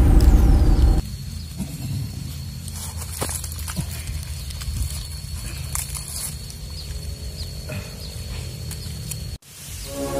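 Edited-in magic-attack sound effect: a loud boom with a falling whistle in the first second, then a steady low drone under a thin high ringing tone with a few faint clicks, cutting off abruptly shortly before the end.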